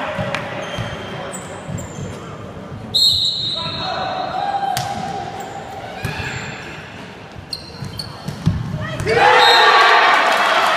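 Indoor volleyball match in a large echoing hall: ball thuds and voices, a short whistle blast about three seconds in before the serve, then players and crowd shouting and cheering near the end as a point is won.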